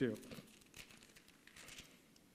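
Faint crinkly rustling of thin Bible pages being handled and turned, a scatter of small crackles that dies away near the end. The tail of a spoken word sits at the very start.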